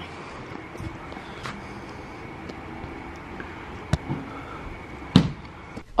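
Steady outdoor background noise, with a sharp click about four seconds in and a louder knock about a second later.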